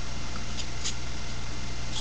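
Steady hiss and electrical hum from a webcam microphone, with two or three faint short ticks, like small handling sounds.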